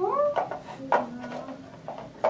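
A child's short wordless vocal sounds: a quick rising-and-falling squeal at the start, then a brief low hum about a second in, with a few light clicks between them.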